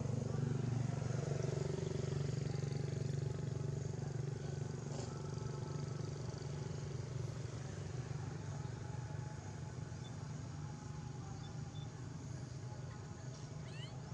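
A motor vehicle's engine running steadily, a low hum that slowly grows fainter.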